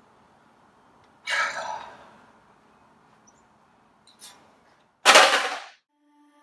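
A man's breathy exhales: a long, fading sigh about a second in, a short breath around four seconds, and a louder, sharp exhale near the end.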